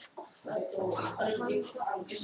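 Quiet, indistinct speech in a small classroom.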